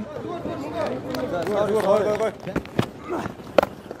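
Mostly a man's voice talking under the match broadcast, then a sharp crack about three and a half seconds in: a cricket bat striking the ball.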